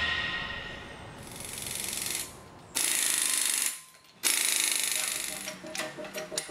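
Background music fading out, then three bursts of a steady, harsh mechanical rattle, each starting and cutting off abruptly; the last is the longest, about a second and a half.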